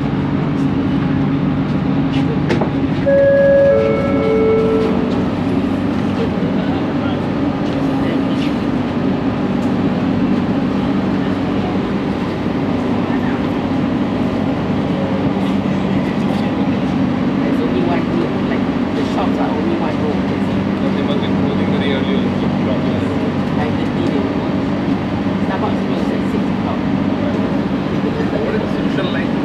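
Steady low hum inside a Bombardier Innovia ART 200 metro car standing at a station. A short electronic chime of a few clear tones sounds about three seconds in.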